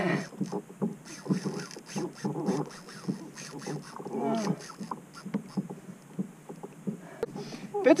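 Irregular small knocks, clicks and water slaps around a plastic fishing kayak during a fight with a big fish on rod and reel, with a faint voice about four seconds in.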